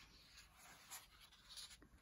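Faint rustle of a paper colouring-book page being turned by hand, with soft papery brushes about a second in and again near the end.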